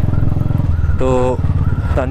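Royal Enfield Classic 350's single-cylinder engine running steadily at road speed, heard from the rider's own bike.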